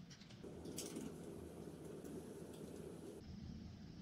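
Faint room tone: a low, even hiss with a single soft click just under a second in, cutting off abruptly a little after three seconds.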